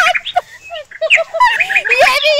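Excited human voices laughing and squealing in short high-pitched bursts, with a brief lull about half a second in.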